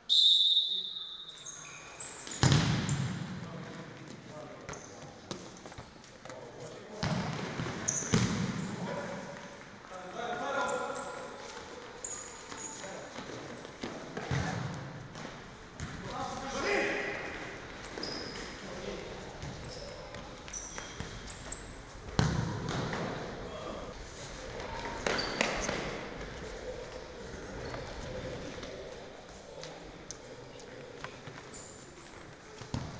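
Futsal match in an echoing sports hall: a short referee's whistle blast at the start, then the ball being kicked hard several times, with players shouting to each other between the kicks.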